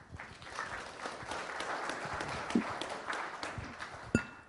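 Audience applauding. It starts suddenly and thins out near the end.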